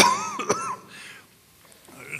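A cough, sudden and loud at the start, followed by throat-clearing that dies away within about a second.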